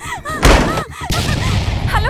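A sudden, heavy, loud thud about half a second in, followed by a low rumble dying away.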